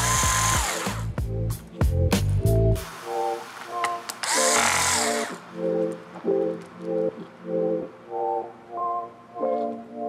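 Cordless electric screwdriver driving small screws into the laptop's display hinges: two short runs of about a second each, one at the start and one about four seconds in, each a brief motor whine. Background music plays throughout.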